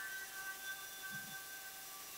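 A pause in speech that leaves only faint steady recording hiss and a thin electrical hum, with one brief soft voiced sound from the speaker about a second in.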